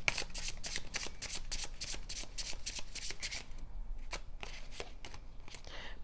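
A deck of oracle cards being shuffled by hand: a quick, dense patter of cards that thins to a few scattered clicks about three and a half seconds in, as a card is drawn.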